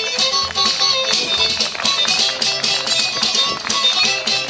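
Bluegrass band playing with a steady beat: acoustic guitar, fiddle, upright bass and snare drum together.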